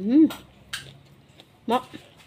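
A woman's appreciative 'mmm' while eating, rising then falling in pitch, followed by two sharp clicks of something tapping against a dish. Near the end comes another short 'mm'-like vocal sound.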